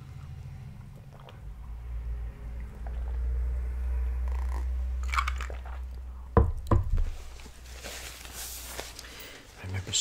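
A man drinking from a glass close to the microphone, with low swallowing sounds. Then two sharp knocks, as of the glass being set down on the table, and a soft hiss near the end.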